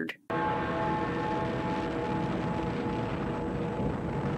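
Animated-film soundtrack excerpt from a volcano scene: a steady rumbling effect with a sustained chord of held tones over it. It cuts in abruptly just after the start.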